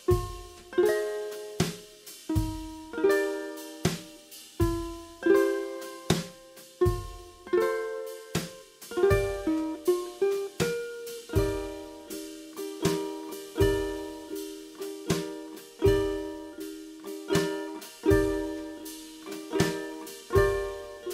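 Kala concert ukulele with a capo at the third fret, strumming verse chords (E minor, D minor 7, C major 7, G6) and picking a short single-note riff, over a steady drum beat.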